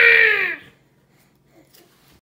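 A baby's single drawn-out, high-pitched vocal squeal that falls slightly in pitch and stops about half a second in.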